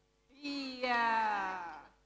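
A person's voice holding one long note that slowly falls in pitch, with a fresh start about halfway through.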